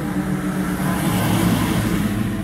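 A car driving past close by, its tyre and engine noise swelling to a peak about a second and a half in, over music with long held tones.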